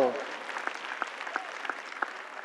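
Light applause from a sparse audience.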